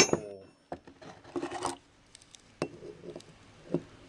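Steel steering Pitman arms and a caliper handled on a workbench: one sharp, ringing metal clink at the start, then a few light knocks and taps.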